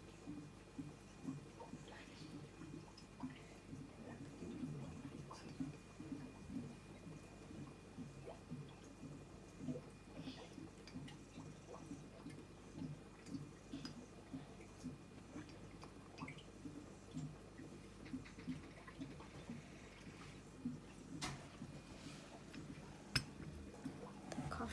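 Hot water poured slowly from a ceramic teapot into a paper drip-bag coffee filter, with brewed coffee dripping through into a glass cup: faint, irregular small drips and trickles.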